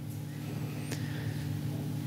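A steady low hum of room noise picked up by the lecturer's microphone during a pause in speech, with one faint click about a second in.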